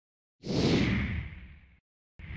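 A whoosh sound effect for an animated logo intro, starting about half a second in and fading away over about a second.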